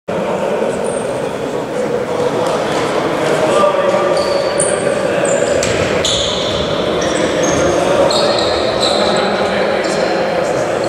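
Ambience of an indoor futsal hall: indistinct voices and a ball bouncing on the court, with many short high shoe squeaks on the floor, all echoing in the large hall.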